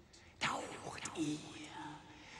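Theatrical spoken words in a breathy stage whisper, starting about half a second in after a short quiet moment.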